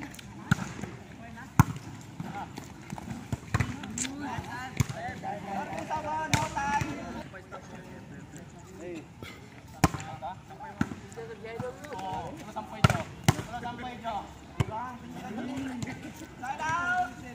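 Volleyball being played: several sharp smacks of the ball being struck, spaced a few seconds apart with two in quick succession near the end, under players' voices calling and chatting.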